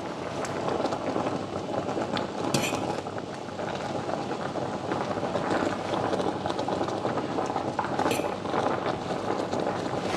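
Water at a rolling boil in a stainless steel pot, bubbling steadily, with a fork clinking against the pot twice.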